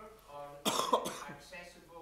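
A single sharp cough about halfway through, over faint, indistinct speech in a large hall.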